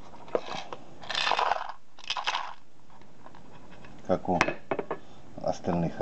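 Small dismantled circuit-breaker parts being handled in a glass bowl and plastic bags. A sharp click comes first, then two short spells of rattling and rustling about one and two seconds in.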